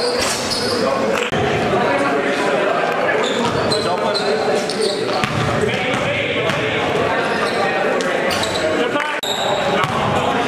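Basketball bouncing on a gym court during play, with players' voices echoing in a large hall.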